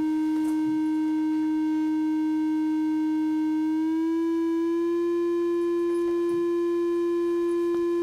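Triangle-wave output of a Befaco Even analog VCO: a steady tone that glides up about two semitones around four seconds in, then holds at the new pitch. The volt-per-octave scale trimmer is being turned because the oscillator's octave tracking is out of tune.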